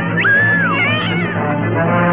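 A cartoon tiger's yowling cry, a wail that jumps up, holds and then falls away in the first second, over orchestral film score.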